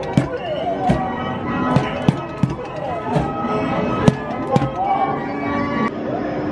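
A Minions whack-a-mole arcade game: a padded mallet knocking on the pop-up targets in a series of sharp hits, roughly one or two a second, over the machine's own music and cartoon voice sound effects.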